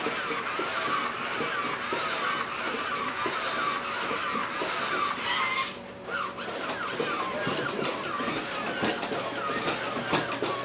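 Toy humanoid robot walking: the whine of its small geared motors wavers up and down with each step, stops briefly near the middle, then resumes with scattered clicks and taps from its joints and feet.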